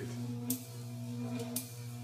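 A high-voltage electrical lab prop with a glowing arc in a glass tube, humming steadily like a transformer, with two sharp spark cracks, about half a second and a second and a half in.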